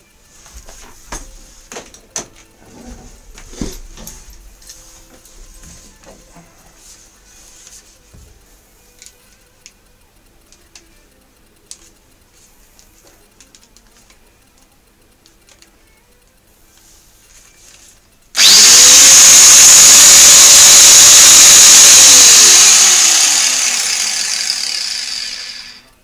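Angle grinder against an empty steel propane cylinder for a quick test cut. It starts suddenly about 18 seconds in, whines up to speed and runs very loud for about three and a half seconds, then is switched off and winds down with a falling whine over the next few seconds. Before it starts there are only light knocks and handling clicks.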